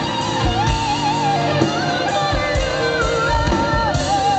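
Live rock band playing a ballad, loud and continuous: an electric guitar melody line over bass and drums, with a lead singer's voice.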